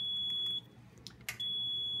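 Level 1 Hotline fluid warmer's alarm beeping: a steady high-pitched tone in beeps about a second long, repeating. It sounds because no warming set is plugged into the unit, and it cannot be silenced until one is.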